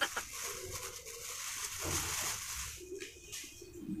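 Plastic bag rustling softly as flour is shaken and emptied from it into a bowl, fading out after about two seconds, with faint low cooing in the background.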